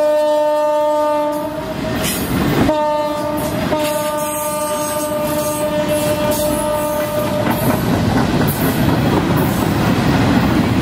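Diesel freight locomotive horn sounding from the lead units as they move off: one long blast that cuts off about a second and a half in, then another long blast from about three seconds in to about seven and a half seconds in, with a brief break near four seconds. Beneath it, and then alone, loaded flatcars and covered hopper cars roll past close by, their wheels clattering over the rail joints and growing louder toward the end.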